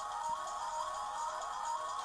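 Soft background music: a simple melody of held notes stepping up and down over a steady bed.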